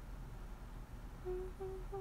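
A young woman humming a short tune with her mouth closed. After about a second without it, she hums three held notes, the last sliding downward.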